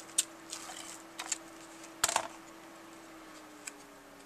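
A few short plastic clicks and paper taps from a handheld tape runner and cardstock being handled on a craft table, the loudest about two seconds in, as the adhesive-backed panel is set onto a kraft card base.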